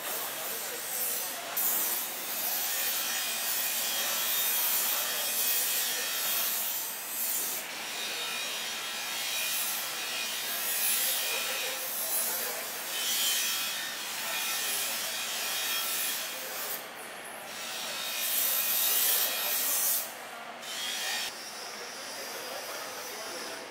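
Long knife sawing and scraping through a raw bluefin tuna loin, a rasping noise in long stretches broken by short pauses.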